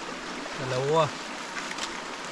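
Shallow creek water flowing steadily, with a man's short vocal sound over it about half a second in.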